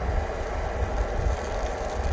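Hash browns sizzling in a frypan over a backpacking canister stove as the last of their water cooks off and they brown, over a steady low rumble.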